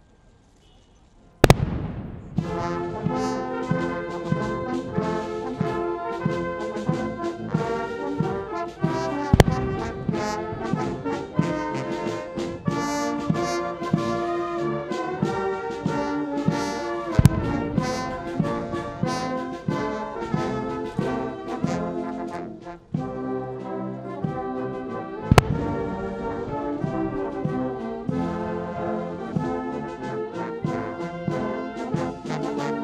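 Military brass band playing a national anthem, starting about a second and a half in. Four loud cannon-salute shots ring out over it, about eight seconds apart, the first as the music begins.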